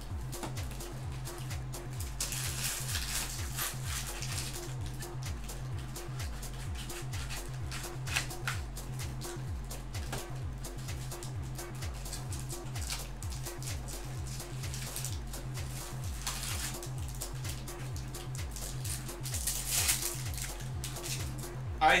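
Background music with a steady, evenly pulsing low beat. Over it come several bouts of rustling from cardboard and pack wrappers as a box of trading-card packs is opened and the packs are handled.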